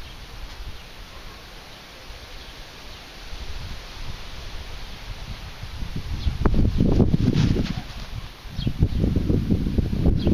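Wind gusting across the microphone: a light rushing for the first several seconds, then loud, low rumbling buffets about six seconds in and again near the end.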